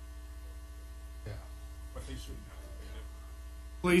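Steady electrical mains hum on the meeting-room audio feed, with faint murmured conversation in the room behind it; a man's voice starts to speak just before the end.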